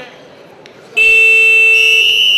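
About a second in, a loud, steady electronic buzzer tone sounds. Partway through, a referee's whistle blast joins it, and both hold for about a second and a half.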